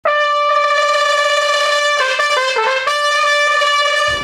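Trumpet playing a long held high note, then a quick run of short notes that dips lower, and back to the held note.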